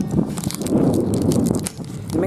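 Wind buffeting the microphone in a rough, steady rumble, with scattered crisp clicks of cracker being chewed close by.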